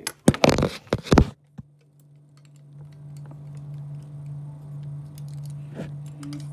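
Handling noise: the recording phone rubbing and knocking against hands or objects for about a second, then a steady low hum that fades in and holds, with a few faint clicks.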